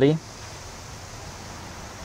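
Steady, even background hiss with no distinct events, right after a man's spoken word ends at the very start.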